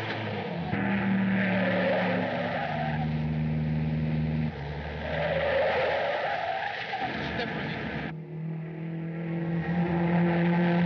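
A 1930s car driving fast, its engine running steadily and its tyres squealing. The sound shifts abruptly about eight seconds in.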